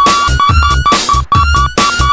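Budots remix electronic dance music: a high synth note stutters in quick repeated pulses, about five a second, over a deep bass beat.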